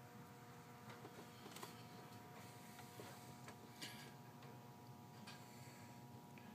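Near silence: faint room tone with a steady low hum and a few scattered faint clicks.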